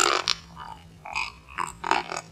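Close-up ASMR mouth sounds: lip and tongue clicks and pops. The loudest comes right at the start, and a few quicker, softer ones follow near the end.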